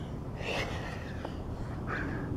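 A man's heavy breathing from the exertion of burpees: a hard, breathy exhale about half a second in and another short breath near the end.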